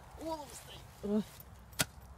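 A shovel blade driven into frozen, ice-hard ground, giving a single sharp clank near the end. Two brief vocal sounds come before it.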